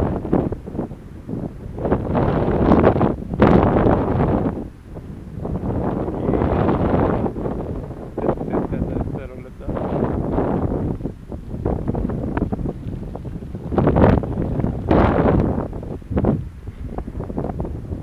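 Wind buffeting the action camera's microphone in uneven gusts: a rushing noise that swells and drops every second or two.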